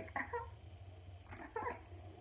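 A woman's soft, high giggling in two short bouts, one at the start and one a little past halfway, acted as the giggle of a tipsy girl being coaxed to sing.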